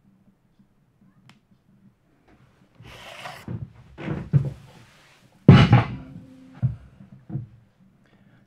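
Metal parts of a dismantled Makita HR2400 rotary hammer being handled and set down on a workbench: a handful of separate clunks and knocks over a few seconds. The loudest comes about halfway through and is followed by a brief metallic ring.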